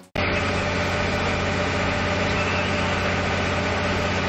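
A vehicle engine idling steadily, starting abruptly just after the start.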